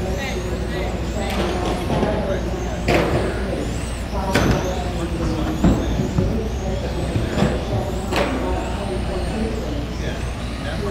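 Electric 1/10-scale RC touring cars driving, their motors giving thin whines that rise and fall, over a steady low hum. About four sharp knocks sound through the middle, with voices behind.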